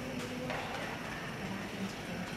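Faint, soft footfalls of a small dog trotting on rubber matting, over the low background hum of a large hall.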